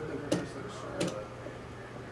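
Two sharp clicks about three-quarters of a second apart, over a low steady hum.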